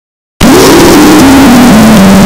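After dead silence, a sudden, extremely loud, heavily distorted blast of noise starts about half a second in, with a tone under it that steps down in pitch four or five times; it is an edited-in distorted sound effect.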